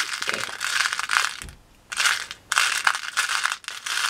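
Pearl beads clicking and rattling against each other and the sides of a clear plastic box as fingers rummage through them, with a short pause about halfway through.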